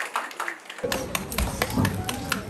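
A small group clapping, sharp claps at a quick, even pace. A little under a second in, a low steady outdoor rumble comes in under the claps.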